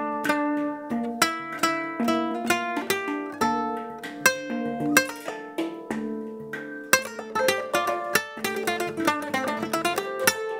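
Handpan and nylon-string classical guitar playing a gentle tune together: a steady flow of finger-struck, ringing steel-drum tones over plucked guitar notes.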